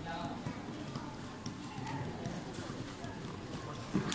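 Silat fighters' feet stepping and shuffling on a foam mat under faint background voices in a hall, with a single sharp thud near the end as one fighter is swept to the floor.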